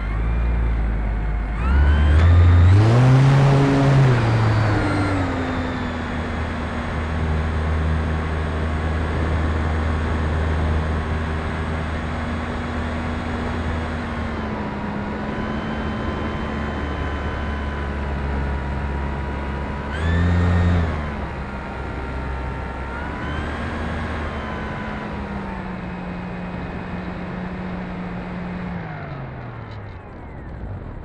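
RC airplane's electric motor and propeller whining, with wind rush over a camera mounted on the airframe. The pitch climbs and falls back a few seconds in, holds mostly steady, surges briefly about two-thirds of the way through, then drops away near the end as the throttle comes back for the landing approach.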